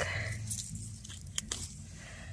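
Dry grass and fallen leaves rustling as hands and a knife work among brittle saffron milk cap mushrooms, with two short crisp clicks about one and a half seconds in.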